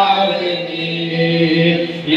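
A group of young men's voices singing a Kannada Christian devotional song in unison, holding one long note that breaks off near the end.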